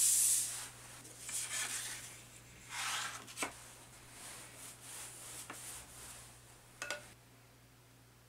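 A wide flat watercolour wash brush being handled and wetted at a water jar: several short, soft swishing rubs with a few light knocks, and a sharper tap near the end.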